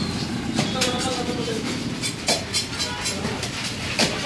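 Knife scraping scales off a snakehead fish in repeated short, sharp strokes.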